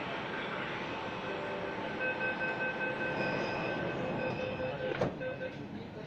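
Delhi Metro Magenta Line train at an underground platform: a steady rumble and hiss, with a steady high whine from about two seconds in. A single sharp knock comes about five seconds in.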